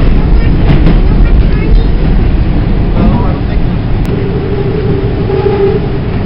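TTC subway train running through a tunnel: a loud, steady rumble of wheels on rails and motors, with a steady whine joining about three and a half seconds in.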